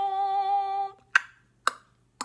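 A woman's sung note, held for about a second, then two sharp tongue clicks about half a second apart, each standing in for a dropped syllable of the sung word.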